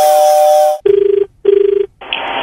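The last held tones of an intro jingle, then one cycle of a telephone ringback tone heard down a phone line: two short buzzing rings close together, the Indian-style double ring of a call waiting to be answered.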